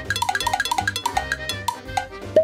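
A short percussive music cue for a dice roll: a quick run of ticking strikes with short notes jumping up and down in pitch, ending after about two seconds.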